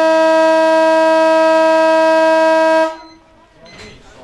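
Football ground siren sounding one long, steady, pitched blast that cuts off about three seconds in, the signal that ends a quarter of play.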